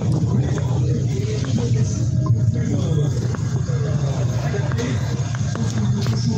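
Motorcycle engines idling close by, a steady low rumble, with voices and music in the background.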